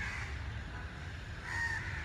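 A bird calling briefly about a second and a half in, over a low steady outdoor rumble.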